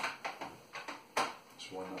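Handling noise from a wet and dry vacuum's mains cable and plug: several sharp plastic clicks and knocks in the first second or so, the loudest about a second in, as the cable is gathered up to be wound back onto the unit.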